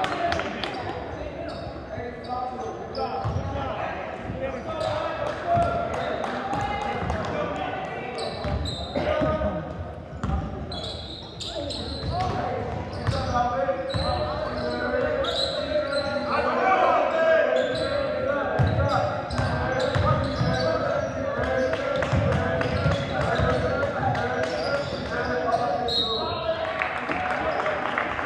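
A basketball being dribbled and bounced on a hardwood gym floor, with sneakers squeaking and players and spectators calling out and talking. All of it echoes through the gymnasium.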